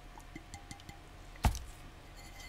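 Faint light handling clicks, then one sharp knock about one and a half seconds in as a small ink bottle is set down on the table.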